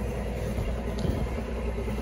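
Steady low background rumble, with a faint click about a second in.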